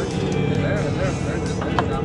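Steady low drone of a boat's engine running, with voices over it and a single sharp click near the end.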